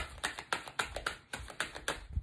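A deck of tarot cards shuffled in the hands: a quick, even run of soft card slaps and clicks, about four or five a second.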